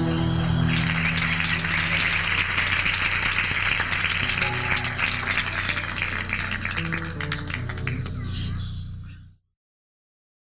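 Live Andean folk band ending a song on a held low chord, with a dense rattling, crackling noise over it. Everything fades and then cuts off to silence near the end.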